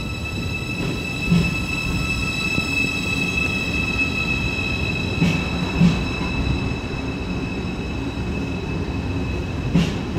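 DB ICE 4 high-speed electric train pulling slowly out of the station: a steady high electric whine over the low rumble of the rolling wheels. Short knocks come as wheels pass over rail joints, about a second in, twice between five and six seconds, and again near the end.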